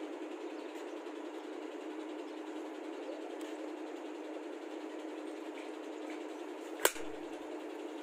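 A single sharp crack from an M4-style rifle being worked by hand, about seven seconds in, over a steady low background hum.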